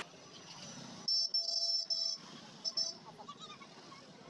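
A vehicle horn honking on a busy street: a roughly one-second blast broken into three pulses, then two short toots about half a second later, over a faint street background.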